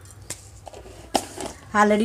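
Mostly quiet, with a single sharp click a little past a second in, then speech beginning near the end. The oil in the pan is not sizzling.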